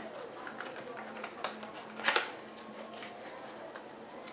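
Light clicks and taps of clear plastic cups being slid and set down on a glass stovetop, the loudest a pair of taps about two seconds in.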